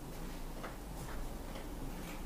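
Quiet room tone with a few faint, unevenly spaced clicks and ticks.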